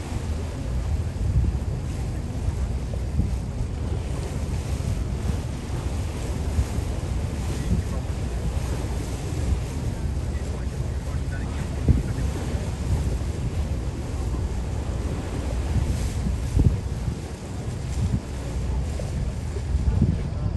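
Wind buffeting the microphone on a moving boat: a steady low rumble with irregular gusts.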